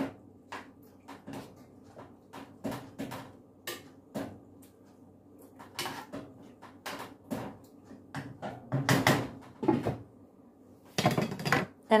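A spoon stirring gravy in a nonstick skillet, tapping and scraping against the pan in short irregular knocks. The knocks bunch up and grow louder around the middle, and there is louder clattering near the end as the pan's lid goes on.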